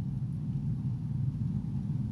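A steady low rumble with no speech, even in level throughout.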